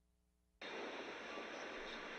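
Near silence, then about half a second in a steady, noisy ambient wash cuts in abruptly: the electronic backing track of the next song starting.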